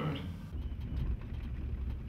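Low, steady rumble of a vehicle driving on a dirt track.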